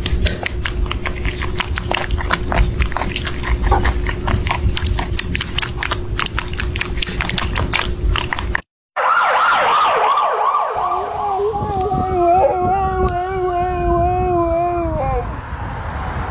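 Rapid wet clicking from two kittens lapping and eating at a shared bowl of milk. After a cut, a husky-type dog howls: a long wavering call that slides down in pitch and then holds.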